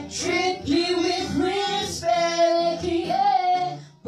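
A woman singing a sustained melodic line over strummed acoustic guitar, with a short break just before the end.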